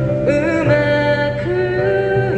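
A man singing through a handheld microphone, holding long notes that slide from one pitch to the next, over an instrumental accompaniment.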